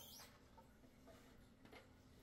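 Near silence: room tone, with a faint brief rustle at the start and a faint tick near the end as wooden flutes are handled on their rack.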